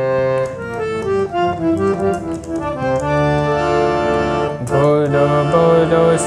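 Reed harmonium playing a bhajan melody in raag Natabhairavi: a run of short, changing notes over held lower notes.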